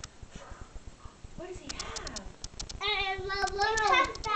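A small child's voice: quiet babble in the first half, then a long held call, rising and falling in pitch, from about three seconds in.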